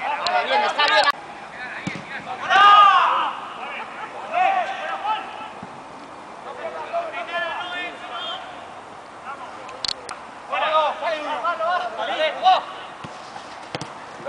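Players' shouts calling out across the pitch in short, raised bursts, the loudest about three seconds in. A few sharp knocks fall in between.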